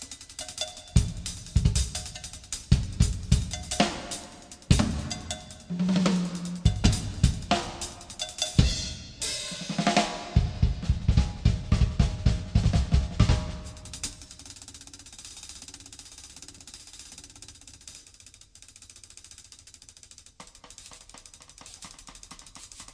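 Drum kit played live in a busy run of fills: kick drum, snare, toms and cymbals hitting hard and fast. It stops about two-thirds of the way through, leaving only a faint light ticking.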